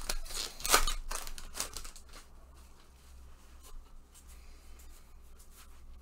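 Baseball card pack wrapper crinkling and tearing as it is ripped open, in a few sharp rustles over the first two seconds. After that come faint clicks and rustles of the cards being handled.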